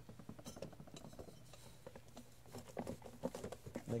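Small irregular clicks and light taps of hands and a polishing rag handling a brass ceiling-fan canopy, over a faint steady low hum.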